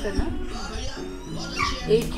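A woman speaking in Hindi, placing a food order over the phone, over background music.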